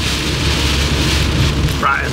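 Rain and wet-road noise inside a moving camper van's cab: a steady hiss of water over the low drone of the engine and tyres.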